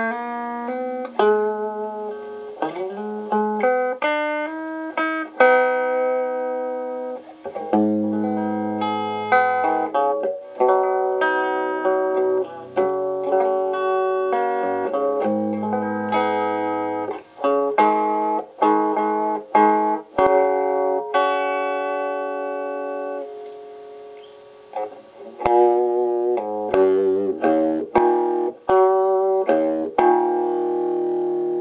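An electric guitar played through a Pignose B100V valve amplifier set up for cathode bias with a 200-ohm cathode resistor. It plays single plucked notes and short phrases, each ringing out, with a lull about three-quarters of the way through.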